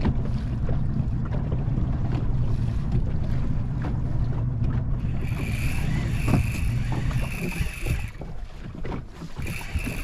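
A boat motor runs steadily at trolling speed, easing off near the end. From about halfway, a baitcasting reel's drag buzzes in several spurts as a big hooked hybrid striped bass pulls line off the bent rod in its holder.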